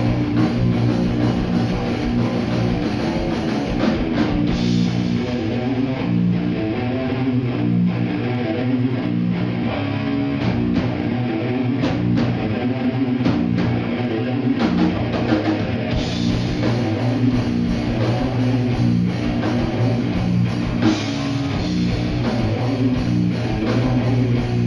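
Live heavy metal band playing loudly: electric guitars and a drum kit.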